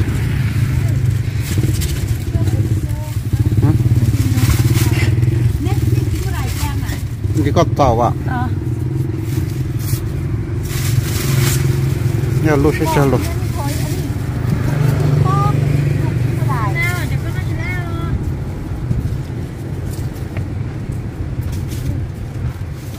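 Steady low rumble of motor-vehicle engines from the street, with short bursts of people talking over it.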